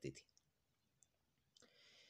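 Near silence between spoken sentences, with a faint click about a second in and a soft hiss of a breath near the end.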